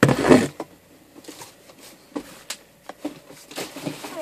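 Cardboard box shoved aside with a brief scraping rustle, followed by scattered light knocks and clicks of handling.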